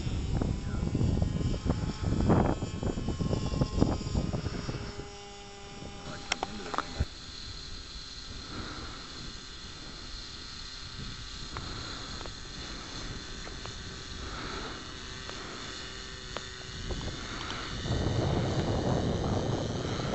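Radio-controlled autogyro's motor and propeller running in flight, a thin steady whine that holds one pitch. There are louder gusts of low rumbling noise in the first few seconds and again near the end.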